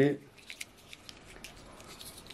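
Faint, scattered small clicks and taps of a plastic disposable lighter being handled and turned in the fingers.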